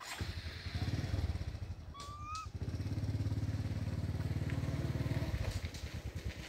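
Small motorcycle engine running close by, a steady pulsing low engine note. A short, high, rising chirp cuts across it about two seconds in.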